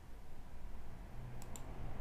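Two quick computer mouse clicks about a second and a half in, made while picking a view option from a menu, over a faint steady low hum.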